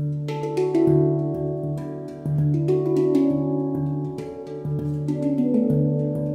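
Stainless steel Svaraa handpan played with the hands: the low central D (the ding) struck about once a second, with higher tone fields struck between, each note ringing on and overlapping the next. The notes belong to an F# Aeolian hexatonic scale over the low D, also called Raga Desya Todi.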